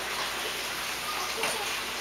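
Steady background hubbub of a busy indoor play space, with faint voices in the distance.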